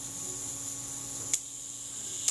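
Super Paxette leaf shutter's self-timer retard gear train running down on its pallets with a steady whirr, then a sharp click about a second and a half in as the timer releases and the shutter blades open.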